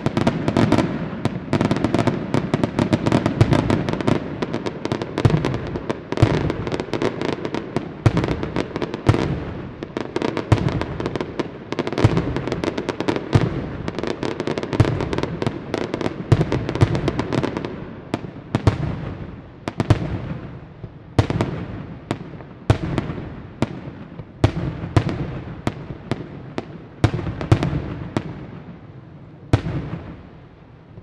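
Aerial fireworks display: a dense, rapid barrage of shell bursts and bangs that thins out after the middle into separate, spaced reports, each trailing off, and eases near the end.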